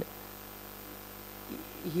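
Steady electrical hum, with a woman's voice starting again near the end.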